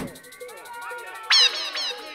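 Drum and bass DJ set in a sparse breakdown: no drums or bass, only electronic tones with a few short, squeaky notes that fall in pitch, the loudest and sharpest a little over a second in.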